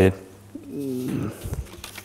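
A man's voice making a soft, drawn-out hesitation sound that bends up and down in pitch, followed about a second and a half in by a soft low thump.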